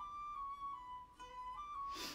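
Quiet background music: a slow melody of long held notes, stepping gently in pitch.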